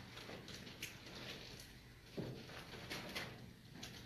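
Faint rustling of paper Bible pages being leafed through, with scattered soft knocks and a brief muffled sound about two seconds in, over quiet room tone.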